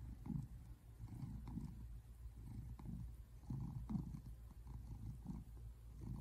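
Tabby American shorthair cat purring, a low rumble that swells and fades with its breathing about once a second.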